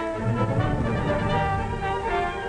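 Orchestral music reproduced from an optical film soundtrack, with strings and a lower brass part that comes in shortly after the start and drops away near the end.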